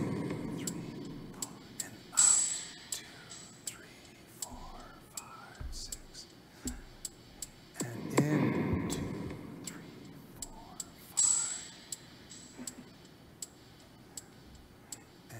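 A slow drum beat track for paced breathing. A deep drum hit rings out and fades over a few seconds, twice, about nine seconds apart. Soft ticks count the beats in between, and a short hiss comes a few seconds after each hit.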